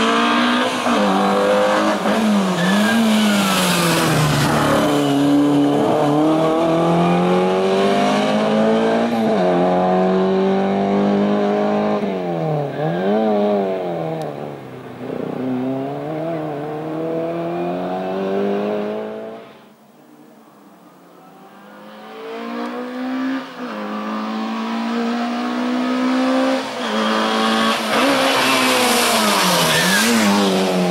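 Race car engine revving hard through a cone slalom, its pitch climbing and dropping sharply with quick throttle lifts and gear changes. The sound fades almost away about two-thirds of the way through, then builds again to full revs near the end.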